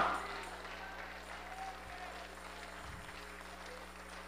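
Faint clapping and voices from a congregation, far below the level of the preacher's microphone, with the hall's echo of his shout dying away at the start.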